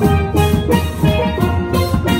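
A steel pan ensemble playing, several pans struck with mallets in a quick, rhythmic run of ringing pitched notes, with low bass notes sounding underneath.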